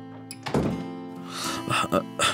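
Soft acoustic guitar background music, with a single sudden thump about half a second in and a man's short laughing, breathy vocal sounds near the end.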